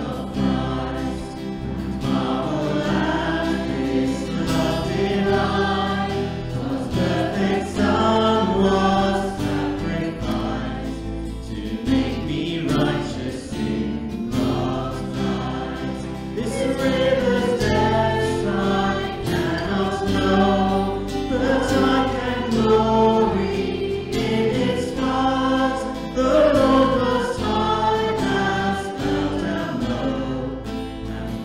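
A worship band performing a congregational hymn: a small group of singers with acoustic guitars and bass guitar, the sung lines held in slow, sustained notes.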